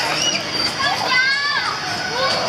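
Children playing and calling out at a playground, their voices high and overlapping, with one longer high-pitched call about a second in.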